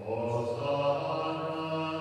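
Liturgical chant sung in held, steady notes, with a new phrase beginning right at the start.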